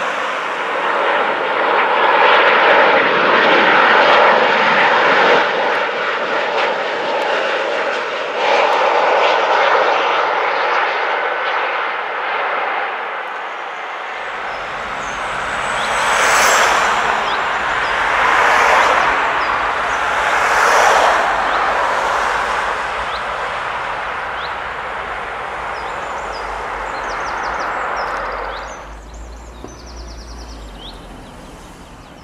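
Boeing 737 jet airliner on low final approach, its engines swelling loud as it passes and then fading. After a cut, a jet on the runway, its engine noise rising and falling in several swells, with wind rumbling on the microphone, until the sound drops away suddenly near the end.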